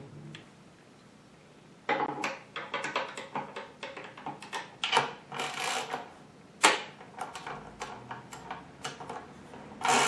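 Hand ratchet wrench clicking in quick, irregular runs as a bolt is tightened through a wooden workbench leg into its stretcher. The clicking starts about two seconds in, with one sharp knock about two-thirds of the way through.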